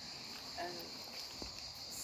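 Steady, high-pitched drone of summer insects, continuous and unbroken.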